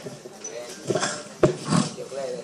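Brief indistinct voices in a meeting room, with a single sharp knock about one and a half seconds in.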